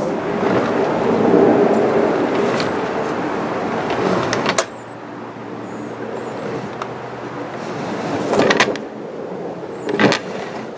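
New 10-gauge power cables and pull string being hauled through a boat's wiring conduit, a steady rubbing and scraping of the cable sliding through. The drag stops suddenly about four and a half seconds in, then goes on more quietly, with a brief louder scrape near the end.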